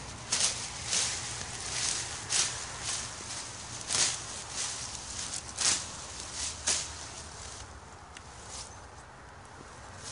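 Sweet potato vines and leaves being grabbed and pulled up by hand, rustling and tearing in irregular bursts that thin out near the end.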